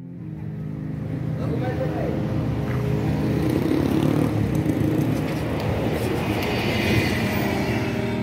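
City street traffic with a city bus driving past close by, its engine and tyre noise building up over the first few seconds and staying loud as it goes by near the end.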